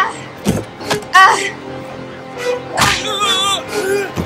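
Action-film fight soundtrack: a music score under several sharp hit sounds and short vocal cries.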